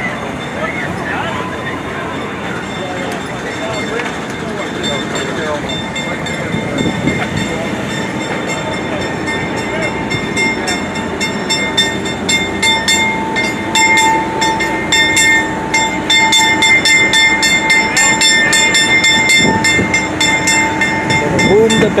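Generators on a row of parked satellite broadcast vans running: a steady high-pitched whine over a fast mechanical rattle, growing louder through the second half.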